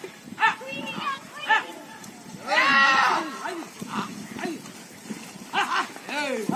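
Men shouting short calls to drive a pair of yoked bullocks as they run, with one long loud shout about two and a half seconds in.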